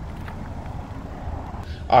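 Power liftgate of a 2023 Chevrolet Equinox closing on its motor, a steady low whir.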